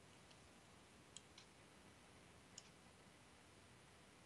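Near silence: faint room hiss with a few brief, sharp clicks.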